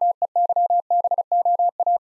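Morse code at 35 words per minute: a single steady beep keyed rapidly on and off in dots and dashes, the second sending of the word KEYBOARD.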